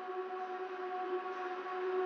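Electronic music intro: one held synthesizer note, quiet and slowly swelling louder, with no beat yet.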